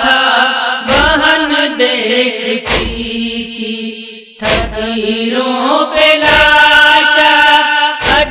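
A woman chanting an Urdu nauha, a Muharram lament, in long drawn-out lines. A heavy thump comes about every two seconds under the voice.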